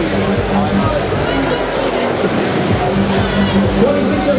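Steady din of a busy robotics event in a large gymnasium: indistinct voices over the PA and from the crowd, mixed with background music.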